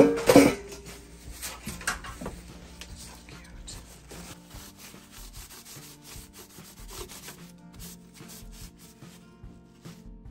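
A paper towel rubbing dark wax into a metal cheese grater in repeated short strokes, after a sharp knock at the very start.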